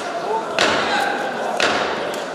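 Two sharp knocks about a second apart, heard over voices in a large hall.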